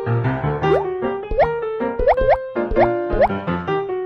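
Bouncy, cheerful children's-style background music with a quick rhythm of short notes, overlaid with several short rising 'boing'-like pitch glides.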